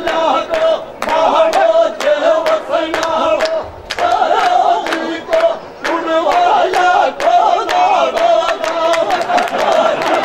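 Men chanting a Rajasthani dhamal folk song in loud, long held lines, over quick regular strokes of a large chang frame drum.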